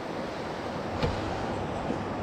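Steady wash of surf and wind noise on the microphone, with one faint tap about halfway through.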